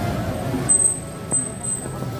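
Busy street traffic noise: road vehicles running, with voices in the crowd.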